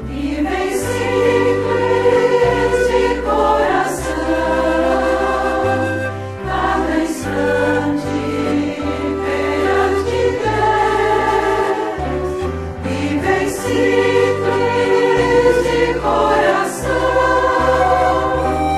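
A choir singing a Christian hymn over instrumental accompaniment with a sustained bass line that moves from note to note.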